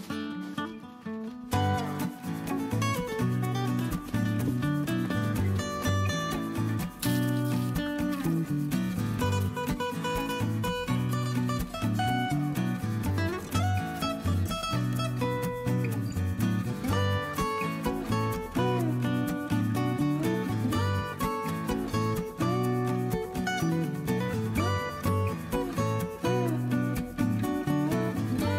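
Background music with acoustic guitar, steady throughout and fuller from about a second and a half in.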